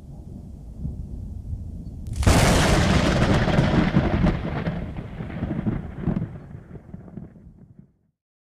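Thunder: a low rumble, then a sharp crack about two seconds in that rolls on and slowly dies away over several seconds.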